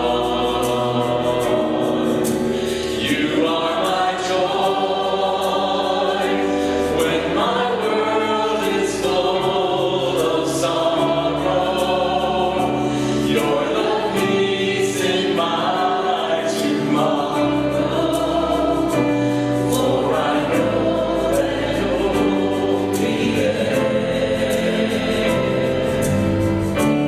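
Church choir and worship leaders singing a gospel worship song, backed by a band with electric guitar and bass.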